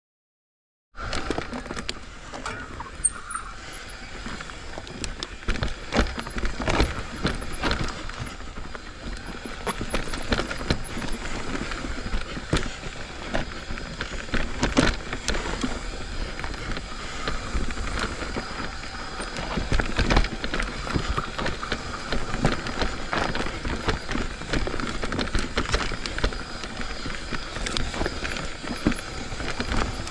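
Commencal Meta full-suspension mountain bike riding down a dirt singletrack: tyres rolling on dirt, with frequent knocks and rattles from the bike over bumps and roots. The sound starts about a second in.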